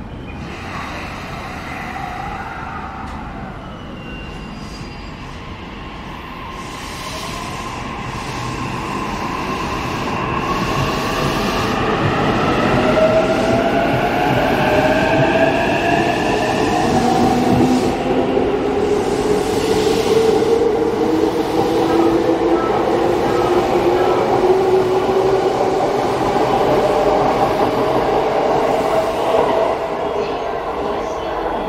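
JR East E233-3000 series electric commuter train pulling away from the platform. Its inverter and traction motors whine in several tones that climb steadily in pitch as it accelerates, over the rumble of wheels on rail. It grows louder from about eight seconds in as the cars pass close by.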